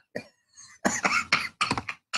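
A man laughing in a run of short, breathy bursts, stronger in the second half.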